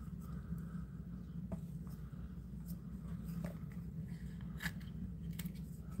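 Small scissors snipping into a snake egg's leathery shell: a few faint, scattered snips over a low steady hum.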